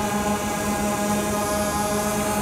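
DJI Phantom 2 quadcopter hovering, its four propellers giving a steady, even-pitched buzzing hum.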